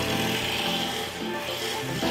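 Wood for a billiard cue being worked with a tool at the bench, a steady rasping, sanding noise as chips fly off, with background music underneath.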